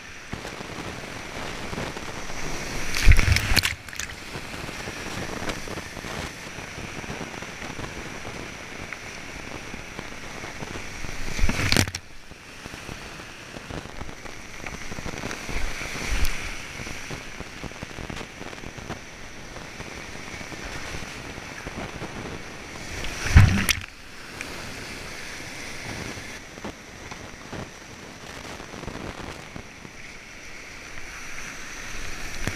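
Rushing river whitewater heard from a kayaker's camera as the kayak runs a rapid, with three loud splashing surges, about three seconds in, near the middle and about three-quarters of the way through.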